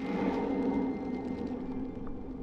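A steady low hum made of several held tones starts at once and continues unchanged.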